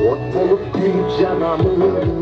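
Dance music with a drum beat and a melodic line over it.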